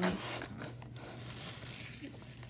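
Faint rustling and rubbing of a cardboard trading-card box being handled and turned, over a low steady hum.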